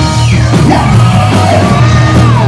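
Live rock band playing loud, with electric guitar, bass and drum kit under a male singer belting into the microphone, his voice sliding down in pitch.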